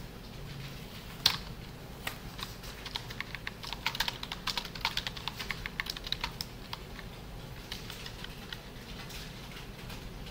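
Computer keyboard typing: a fast run of keystrokes in the middle, with scattered single key presses before and after.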